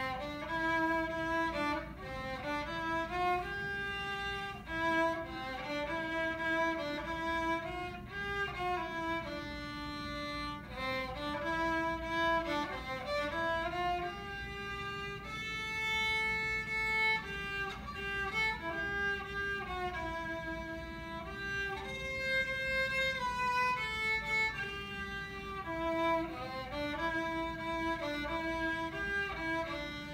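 Solo violin playing a melody, bowed note to note with a few longer held notes, unaccompanied, in a room with some echo.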